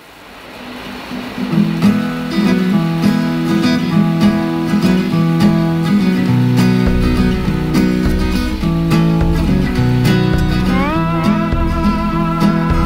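Country song's instrumental intro led by acoustic guitar, fading in over the first couple of seconds; a deep bass comes in about seven seconds in, and a gliding melody line joins near the end.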